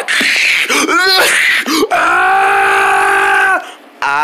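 A person's voice crying out in character: a short rising yelp about a second in, then one long held wail of about a second and a half that dips and stops shortly before the end, after a noisy rustling start.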